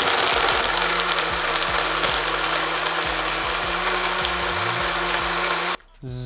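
Single-serve personal blender running loudly and steadily, mixing a thick shake of milk, protein powder and oats; the motor cuts off abruptly near the end.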